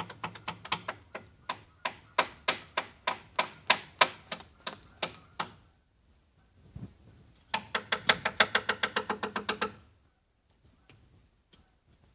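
Two wooden sticks struck together in a run of sharp, ringing clacks, about three or four a second. After a pause of under two seconds they go into a fast roll of about seven a second that stops a couple of seconds before the end.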